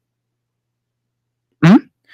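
Silence, then a short, rising 'mm-hmm' from a voice near the end.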